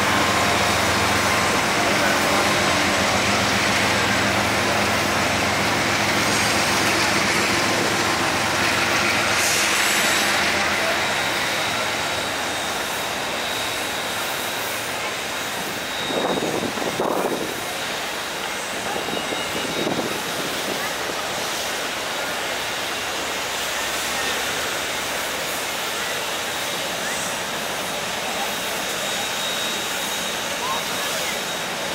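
Union Pacific 4014 "Big Boy", a 4-8-8-4 articulated steam locomotive, rolling slowly by with a steady hiss and rumble of steam and running gear. A low drone with several steady pitches fades about ten seconds in, and two brief louder noises come a little past the middle.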